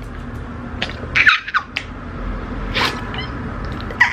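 A young woman's excited squeals and giddy noises, muffled by a hand over her mouth: a few short squeaky glides, the loudest a little over a second in.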